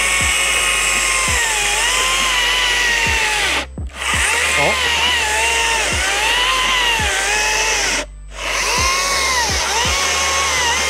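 Stihl MSA 140 C 36-volt cordless chainsaw cutting a railroad tie under heavy downward pressure, its motor whine sagging in pitch as it bogs and recovering again and again. The motor stalls out twice, cutting off for a moment about four seconds in and again about eight seconds in, then spins back up.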